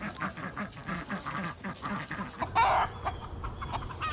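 A flock of chickens and ducks calling: a rapid run of short clucks and calls, about four a second. About two and a half seconds in, it gives way to one louder, rougher burst of sound.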